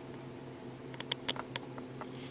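Steady low hum inside a car cabin, with a quick run of five or six light clicks about a second in.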